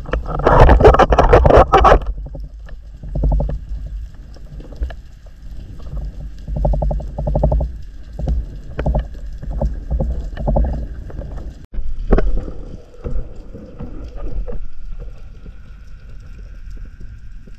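Water and air noise from a freediving spearfisher heard through a GoPro's waterproof housing: a loud rush of water and air shortly after the start, then a run of rough, repeated breaths, each about a second long, through the snorkel.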